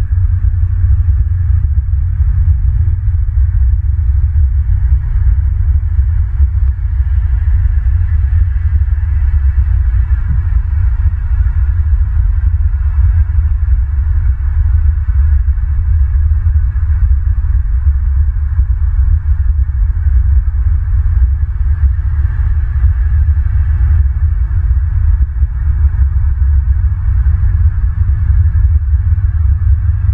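Loud, steady low rumble picked up by an outdoor nest-camera microphone, with a fainter even hiss above it.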